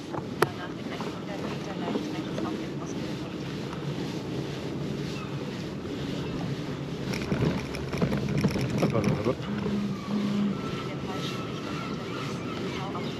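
Steady rolling noise of bicycle tyres on pavement with wind on the microphone while riding slowly, a sharp click about half a second in, and faint voices and tones in the middle.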